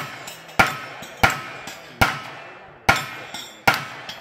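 Five gunshots fired in an irregular string, about one every 0.7 seconds. Each shot is followed by a short ring and echo, fitting steel targets being hit.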